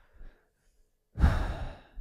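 A man's heavy sigh, breathed close into a headset microphone: a sudden rush of breath about halfway through that fades away over most of a second.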